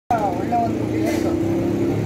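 Voices talking over a steady low engine hum.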